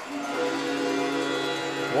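Arena goal celebration sound right after a goal: a held chord of several steady tones that comes in just after the start and keeps going.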